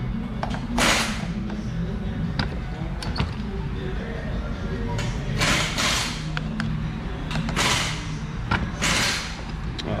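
An exhaust pipe cutter being worked around the steel canister of an oil filter held in a bench vise. The cutting wheel scrapes the metal in about five short strokes with a few sharp clicks, over a steady low hum.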